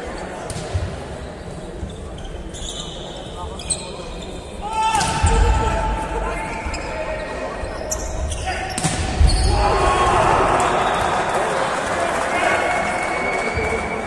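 Volleyball rally: a few sharp smacks of hands striking the ball, then players shouting and spectators cheering from about five seconds in, with another hard hit near nine seconds.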